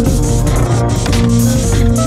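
Electronic music: sustained Haken Continuum synthesizer tones that slide smoothly in pitch, over a steady Korg Kronos drum beat.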